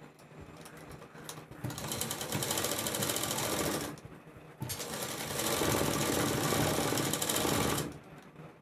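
Sewing machine stitching in two runs of fast, even needle strokes: one starting a little under two seconds in and stopping about four seconds in, then after a short pause a longer, louder run that stops just before the end.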